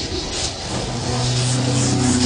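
Intro sound effect for an animated logo: a rising noisy rush that settles, about a second in, into a steady low droning tone.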